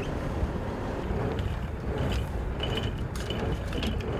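Boat's line reel winding in a hand-guided trolling line whose hooks have snagged on the sea bottom, over the steady low rumble of the boat's engine, with short high squeaks in the second half.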